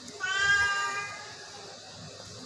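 A sick long-haired Persian cat gives one drawn-out meow, about a second long, starting just after the beginning and fading away.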